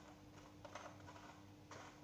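Near silence, with a few faint light clicks and rustles of graham crackers being handled and laid into a plastic container, over a low steady hum.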